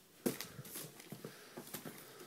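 Wrapped presents being handled in a cardboard box: a light knock about a quarter second in, then scattered soft rustling and small clicks of wrapping paper and card.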